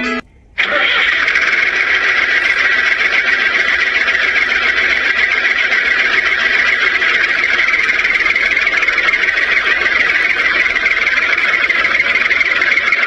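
A toy tractor running, a loud, steady whirring noise that holds the same pitch throughout, starting after a brief silence right at the beginning.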